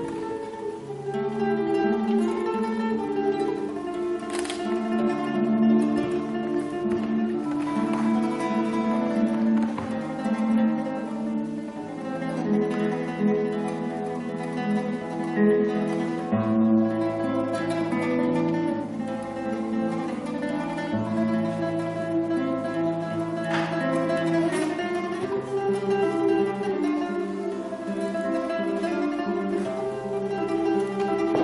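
Solo classical guitar played fingerstyle: a continuous piece with repeated plucked notes over held bass notes.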